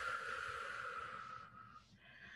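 A woman's long, audible breath out, fading away about a second and a half in.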